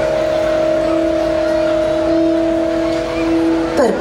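Background music holding one steady sustained chord of a few notes, with a slight swell in the lowest note. A woman's recorded voice-over comes back in near the end.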